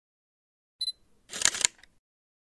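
Camera sound effect: silence, then a short high beep, followed about half a second later by a brief shutter clack.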